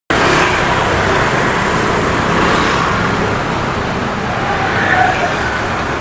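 Steady street traffic noise: a continuous wash of passing motor vehicles.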